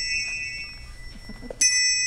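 Handbells held four in each hand (eight-in-hand) ringing. The ringing from a strike just before fades away, and a new pair of bells is struck about one and a half seconds in and rings on steadily.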